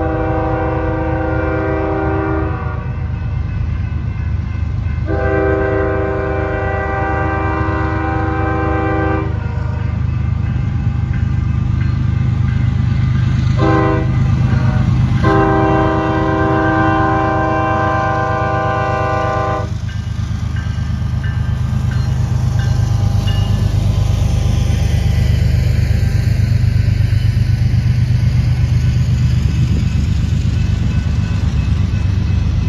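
Norfolk Southern freight train's lead GE diesel locomotive blowing its multi-note air horn in the grade-crossing signal, long, long, short, long, over the steady rumble of the diesel engines. After the last blast the locomotives pass and the autorack cars roll by on the rails, getting a little louder near the end.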